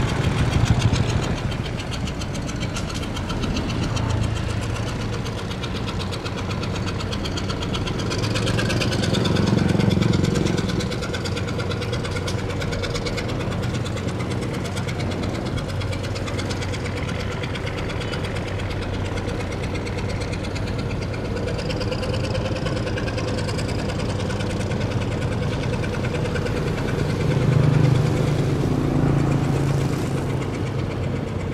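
Boat engine running steadily with a low hum, growing louder about ten seconds in and again near the end as boats pass.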